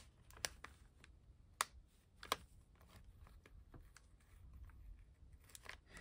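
Faint paper handling: fingertips peeling and pressing small stickers onto the thin pages of a planner, with a few light, sharp ticks.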